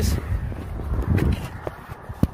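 Handling noise of a phone's microphone as the phone is moved about and set down: low rumbling in the first second or so, then a few light knocks.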